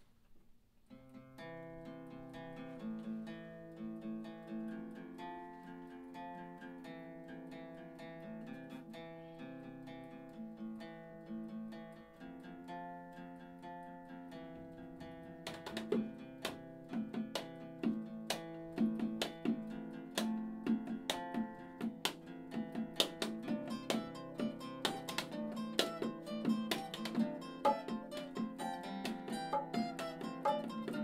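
Two acoustic guitars start playing a song about a second in, with steady chords. About halfway through, hand-played bongos join with sharp strikes, and the music grows louder and busier.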